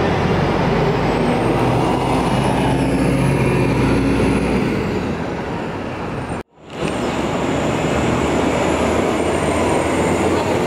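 City transit bus engine running as the bus drives off, fading after about four seconds, with street traffic around it. The sound breaks off sharply at about six and a half seconds and resumes with another bus's engine running.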